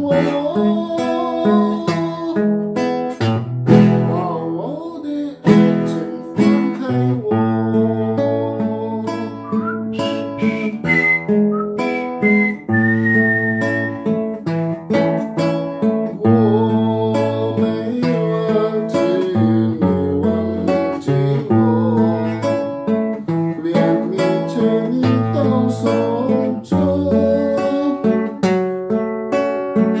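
Classical nylon-string acoustic guitar played fingerstyle, plucking a Mandarin pop song's melody over held bass notes.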